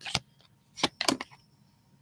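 A few short, sharp snaps and clicks of tarot cards being handled and turned over on a tabletop, bunched in the first second or so.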